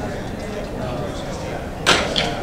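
Background chatter of people in a large room, with one sharp knock or clack near the end that is the loudest sound.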